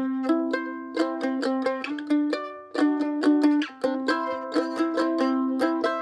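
Johansson F-style mandolin strummed and picked: a C chord hit up and down with a couple of arpeggiated notes, then a slide up to a D add nine chord with the open E ringing, and back down to C.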